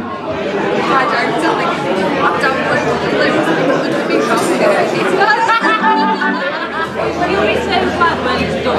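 Many people talking at once: pub crowd chatter before a song. A low steady hum comes in near the end.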